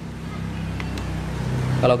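A steady low mechanical hum, with two faint clicks about a second in.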